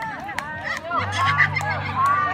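A group of women shouting and laughing excitedly, many short high calls overlapping, with a few sharp claps among them.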